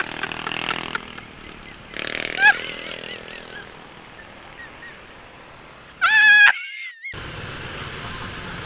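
Motor scooter riding through city traffic: steady engine and road noise. A short pitched beep comes about two and a half seconds in, and a louder half-second tone with a bending pitch near six seconds.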